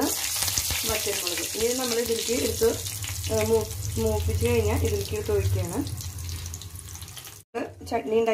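Hot oil sizzling in a kadai as dried red chillies are dropped into a tempering of curry leaves: a loud hiss that starts suddenly and slowly dies down.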